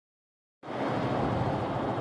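Dead silence, then about half a second in a steady vehicle rumble with hiss starts and holds.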